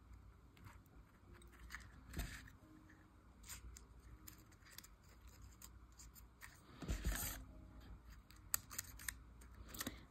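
Faint small clicks and paper rustles as fine metal tweezers pick up and tuck tiny die-cut cardstock petals into a paper flower, with a louder rustle about seven seconds in.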